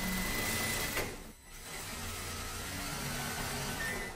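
Juki industrial sewing machine stitching a hem, running steadily, stopping briefly just over a second in, then running again.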